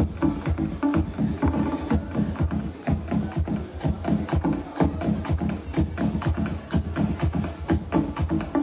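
Electronic dance music with a steady, driving beat, played from a Denon SC5000 Prime DJ media player through a DJ mixer.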